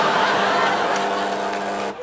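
A low, steady electric buzzer sounds for about two seconds over audience laughter and cuts off abruptly near the end. It is the host's buzzer ending the current style of the improvised scene.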